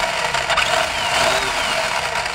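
Electric RC truck's motor and gear drivetrain running under throttle with the wheels spinning freely off the ground: a loud, steady whirring with faint falling whines.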